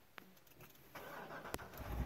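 A 2009 Corvette Z06's 7.0-litre LS7 V8 being started by push button. A faint click comes first, then about a second in the starter begins cranking with a steady whir, and near the end the engine catches with a low rumble.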